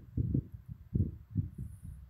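Soft, irregular low thumps, about eight in two seconds: handling noise on a handheld phone's microphone.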